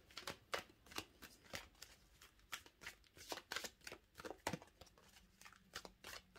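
A tarot deck being shuffled by hand: a quiet, irregular run of soft card-on-card clicks and flicks.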